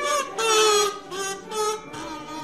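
A high-pitched voice singing or vocalising without clear words, in about four short pitched notes that bend up and down.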